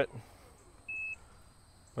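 A single short, high-pitched beep from the 2025 Mazda CX-70's power liftgate as a kick under the rear bumper stops the moving gate.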